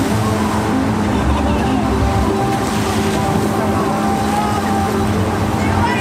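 Water spraying and splashing across a log flume's splash pool as a coin-operated water cannon fires at riders, over a steady mechanical hum.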